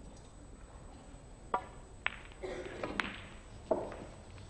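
A snooker shot: a sharp click of the cue striking the cue ball about a second and a half in, then several more clicks of balls colliding over the next two seconds.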